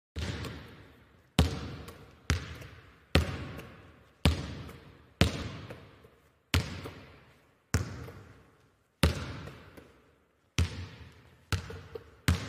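A basketball being bounced slowly on a hard court, about eleven single bounces roughly a second apart at an uneven pace, each one echoing and dying away.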